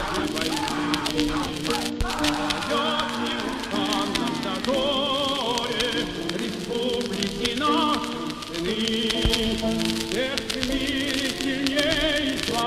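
Music: voices singing with a strong vibrato over held chords, from a Soviet-style patriotic song.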